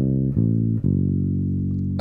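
Electric bass guitar plucked fingerstyle: three single notes in quick succession, the last one held and ringing for over a second.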